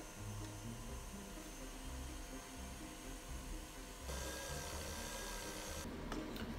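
KitchenAid stand mixer motor running faint and steady with a light whine, its wire whisk beating meringue; the sound shifts slightly about four seconds in.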